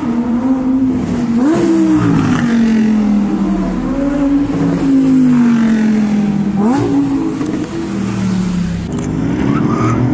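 Supercar engines revving and driving past, among them a Lamborghini Huracán Performante's V10, loud throughout. The engine note jumps up sharply twice and slides down slowly in between.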